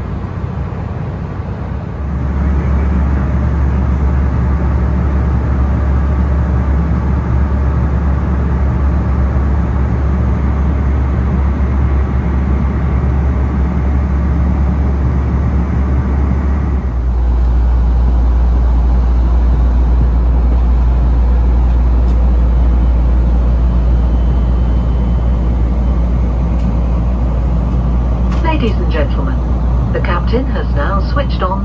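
Steady cabin noise of an Embraer E190 jet airliner in cruise: engine and airflow drone with a strong low hum. The drone steps up about two seconds in and shifts lower and louder around seventeen seconds in.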